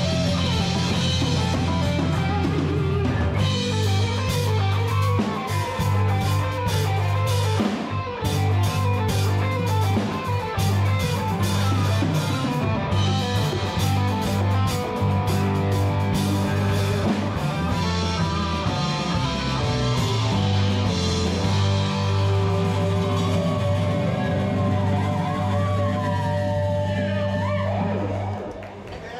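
A live rock band playing: electric guitars, keyboards, bass and drum kit together, with a lead melody gliding between notes over steady held bass notes.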